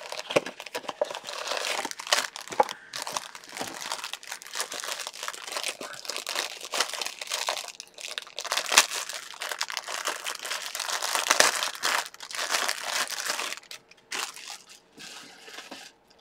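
Packaging for a small plush doll being handled and unwrapped by hand: dense, irregular crinkling and crackling that eases off to a few quieter rustles near the end.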